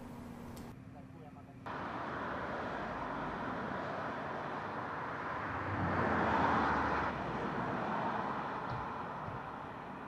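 Road traffic noise, an even rushing sound that swells to its loudest about six to seven seconds in and then eases off.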